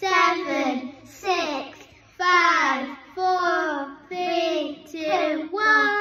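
A young girl singing a tune in a run of short phrases, several with held notes.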